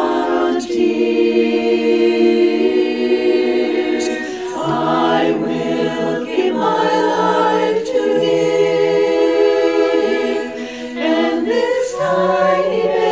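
Women's a cappella choir singing long held chords in several parts, without accompaniment. The chords change every few seconds.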